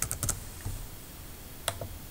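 A few keystrokes on a computer keyboard as a number is typed: a quick run of clicks at the start and two more near the end.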